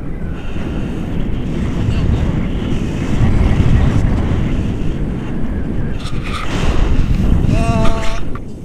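Airflow from a tandem paraglider's flight rushing over the camera's microphone, a loud, low, uneven rumble that swells and eases as the wing descends low over the snow toward landing. A short voice call near the end.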